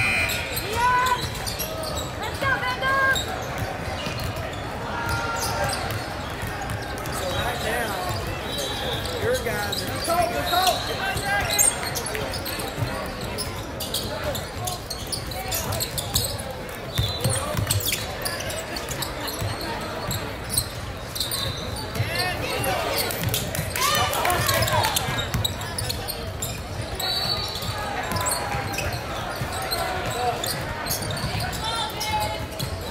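A basketball being dribbled on a hardwood gym floor during play: repeated bounces throughout, amid shouting and chatter from players and spectators echoing in a large gym.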